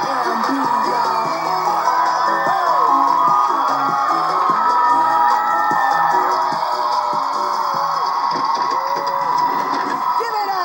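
Live concert music played loud, with a crowd of fans screaming and cheering over it.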